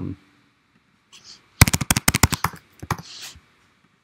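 Typing on a computer keyboard: a quick burst of about ten keystrokes in roughly a second, followed by a couple more keystrokes shortly after.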